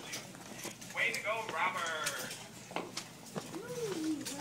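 An indistinct voice speaking briefly about a second in, then a drawn-out vocal sound that rises and falls in pitch near the end, with scattered light clicks in between.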